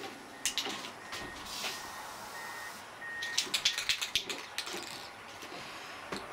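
Aerosol spray-paint can being handled: a couple of sharp clicks about half a second in, then a quick run of rattling clicks a little past the middle.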